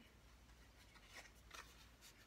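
Near silence, with a couple of faint rustles of cards being handled past the middle.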